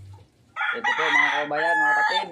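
A rooster crowing: one loud, drawn-out crow with a couple of breaks, starting about half a second in.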